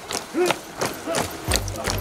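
Footfalls of a group of runners on a paved road, with a brief vocal call about half a second in. Background music with a low bass comes in about one and a half seconds in.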